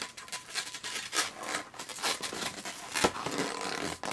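Latex twisting balloons rubbing and scraping against each other and against the fingers as a strip of balloon is wrapped around a twist and tied, in a run of short scrapes with one sharp snap about three seconds in.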